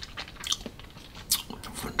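Wet lip smacks and tongue clicks of a man savouring a mouthful of whisky: a few short, separate smacks spread through two seconds.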